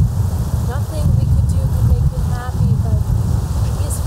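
Wind buffeting the microphone: a loud, gusty low rumble, with faint voices talking underneath.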